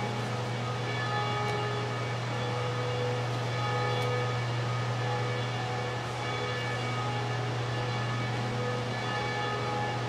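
A steady low hum, with faint sustained tones at several pitches above it that come and go.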